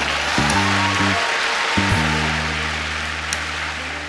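Audience applause that thins out toward the end, over a hip-hop instrumental beat of sustained low bass chords.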